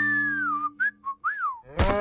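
A cartoon character whistles a short tune: a long note sliding downward, two short notes, then a quick rising-and-falling note. Near the end a sudden loud, low cry breaks in.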